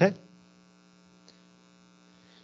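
A faint, steady electrical buzzing hum, a stack of even tones, under an open microphone, just after a spoken "okay".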